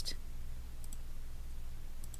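Two faint computer mouse clicks about a second in, over a steady low electrical hum.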